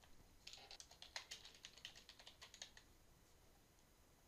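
Faint typing on a computer keyboard: a quick run of keystrokes starting about half a second in and stopping a little before three seconds.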